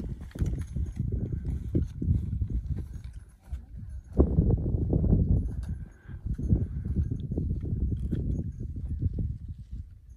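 Wind rumbling on the microphone, with footsteps and the clack of trekking poles on rock.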